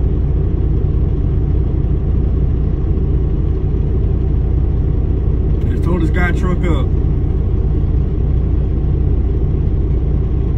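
Semi truck's diesel engine idling with a steady low rumble; a voice speaks briefly about six seconds in.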